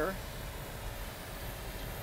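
A steady rushing noise with a low hum underneath, even throughout, with no distinct knocks or pops.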